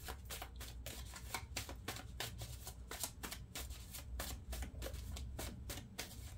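A deck of oracle cards being shuffled by hand: a quick, even run of soft card snaps, about five or six a second.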